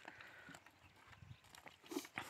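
Near silence: faint outdoor field ambience with a few soft knocks and scuffs, the clearest just before the end.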